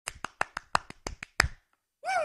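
A quick run of about nine sharp clicks, roughly six a second, with the last one the loudest, stopping about a second and a half in.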